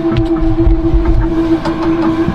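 A vacuum pump running with a steady hum over a low rumble, drawing down to seal the Titan submersible's hatch, with a few light clicks.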